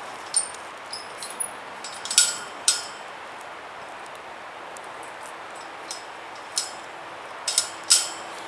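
Steel wire cattle panel clinking and rattling against steel T-posts as it is shifted into place by hand: scattered sharp metallic clicks, a few ringing briefly, in clusters about a second in, around two to three seconds in and near the end.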